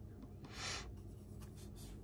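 Watercolour brush bristles rubbing briefly: a soft, short swish about half a second in, over a faint low room hum.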